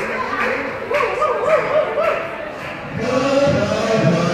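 A crowd singing together, with hand-clapping in time in the first couple of seconds; more voices join and it grows fuller about three seconds in.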